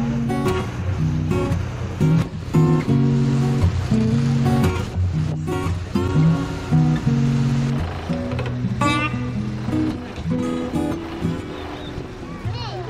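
Background music led by a strummed acoustic guitar playing steady chords.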